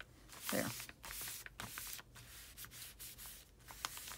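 Hands rubbing and smoothing a sheet of glued-down paper flat onto a paper envelope cover: a run of soft, dry swishes, with a light tap near the end.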